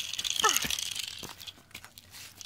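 Gritty crackling and scraping for about a second and a half, with a short falling squeal about half a second in, then a few faint clicks.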